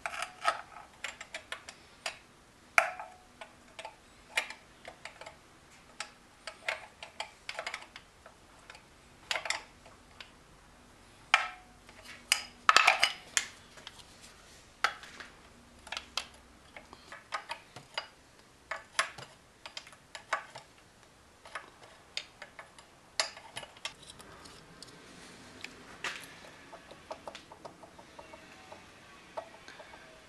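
Hand tools clicking and clinking on metal in irregular, sharp strikes: a wrench and screwdriver working the half-inch nuts that hold the carburetor on a Seahorse outboard motor.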